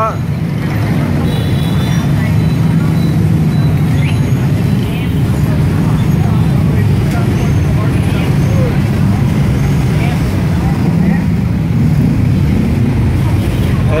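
Many motorbike engines running together in a traffic jam, making a loud, steady hum, with crowd chatter over it.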